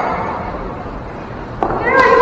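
Players' high calls and shouts echoing in a large gymnasium. They fade to a lull, then a new rising call starts near the end.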